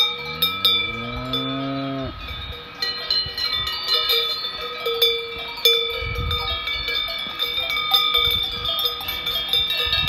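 Many cowbells ringing and clanking together on a herd of grazing Alpine cows. Near the start one cow moos once, a low call rising in pitch over about two seconds.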